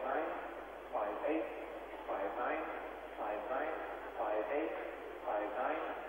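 Speech: a man's voice talking in short phrases, about one a second, on a muffled, narrow-band old television soundtrack.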